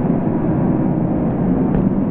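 Soundtrack muffled by a low-pass filter, with the highs cut away so that only a steady low rumble is left.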